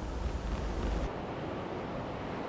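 Steady, even background noise with no distinct sound in it; its tone changes about a second in, losing some low hum and high hiss.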